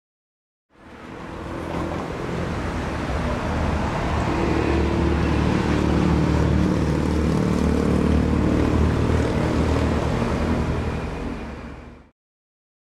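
Street traffic, a car driving past with its engine hum and tyre noise; the sound fades in about a second in and fades out at the very end.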